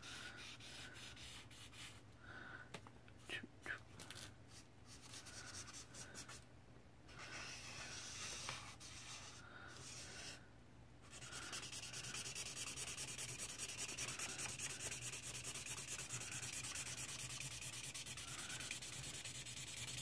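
Faint scratching of a Lémouchet alcohol marker's nib rubbed back and forth over coloring-book paper, first in short strokes with brief pauses, then a steady rapid scratching from about halfway through.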